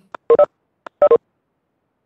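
Two short electronic beeps about three-quarters of a second apart, each made of two quick tones, like telephone keypad tones. Each beep is preceded by a faint click.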